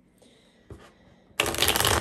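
A tarot deck being shuffled: after a quiet start, a loud burst of rapid card clicks begins about a second and a half in.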